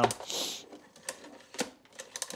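A few sharp, scattered plastic clicks and knocks from the housing of a Bosch Formula canister vacuum being handled during disassembly, with a short hiss near the start.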